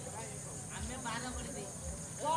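Steady high-pitched chirring of crickets, with soft low thuds of walking footsteps about twice a second.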